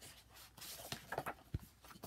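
Handling of a large hardcover comic omnibus: the cover and pages rustle and scrape with small clicks, and a soft low thump comes about a second and a half in.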